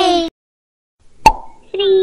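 A single cartoon pop sound effect, short and sharp with a brief ringing tone, about a second in. It falls between the falling-pitch tail of a voice just before it and another voice starting on a steady pitch near the end.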